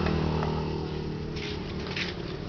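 A motor vehicle engine running steadily, its low hum slowly fading over the two seconds.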